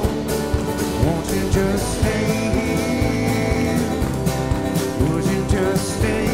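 Live country band playing an instrumental passage: a fiddle wavers over drums, electric bass and strummed acoustic guitar, with a steady drum beat.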